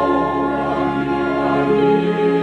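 Mixed choir of men and women singing a Korean hymn in held, sustained notes, with piano and instrumental accompaniment.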